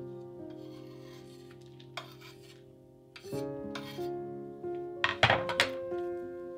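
Soft instrumental background music with held chords. Over it come a few short rubbing and scraping sounds from handling a wooden chopping board and knife, the loudest cluster near the end.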